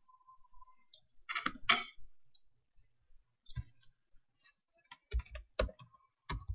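Computer keyboard keys being typed in short irregular clicks, with two louder strokes about a second and a half in and a quick run of keystrokes near the end.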